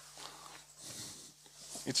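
Quiet lecture-hall room tone with faint, indistinct voices. A voice begins speaking near the end.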